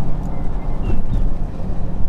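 Steady low rumble of a Jeep Grand Cherokee Trackhawk's supercharged V8 and drivetrain, heard inside the cabin as it rolls slowly.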